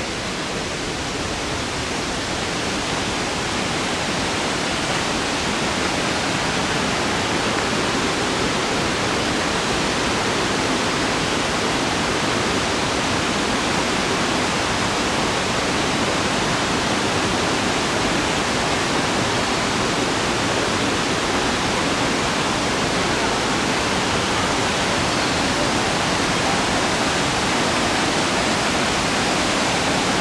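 Waterfall: a steady rush of falling water, growing a little louder over the first few seconds and then holding even.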